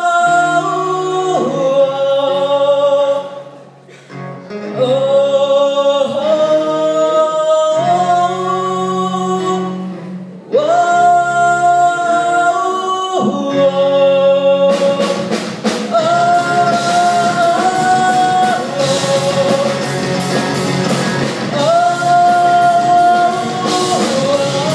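Live rock band performance: voices sing a wordless 'whoa-oh' sing-along melody in long held notes, phrase by phrase, over guitar. About fifteen seconds in, the drums and full band come in with a steady rock beat while the chant carries on.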